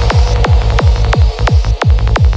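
Electronic music: a rapid, even run of heavy bass hits, about six a second, each falling sharply in pitch into deep bass.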